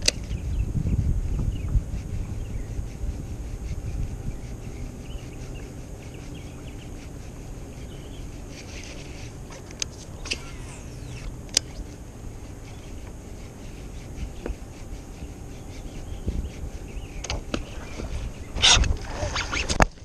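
A topwater frog being worked across the water from a kayak: faint clicks from the baitcasting reel over a low rumble that dies down after the first few seconds. About a second before the end comes a loud splash as a snakehead strikes at the frog and misses.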